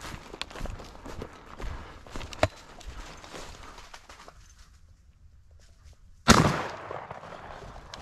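Footsteps crunching through dry grass and leaf litter, a pause, then a single loud shotgun blast a little past six seconds in, its report trailing off over about a second.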